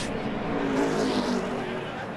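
NASCAR stock car engines running on the track, with a car passing by about a second in.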